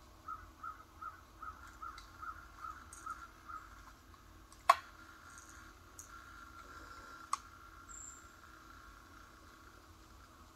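A bird calling about nine times in quick, even succession, after which the calls stop. A single sharp click follows a little later, the loudest sound here, then a fainter click a few seconds after it.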